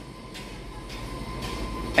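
Steady low mechanical rumble with a faint steady hum, swelling slightly near the end.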